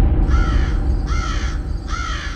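Horror-style sound effect: a deep, loud rumbling drone with three crow caws on top, a little under a second apart.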